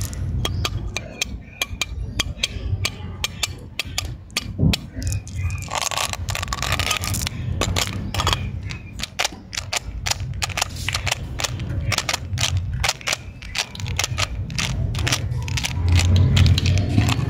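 Jelly beans clicking and rattling against thin plastic as they are handled and dropped into clear plastic candy containers: a rapid, irregular run of sharp clicks.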